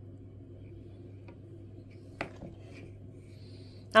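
A metal spoon stirring thick batter in a glass bowl: faint scraping with a few light ticks and one sharper clink against the glass about two seconds in, over a steady low hum.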